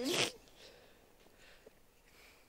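A short breathy burst of laughter, a snort-like exhale, right at the start, then faint breathing over low hiss.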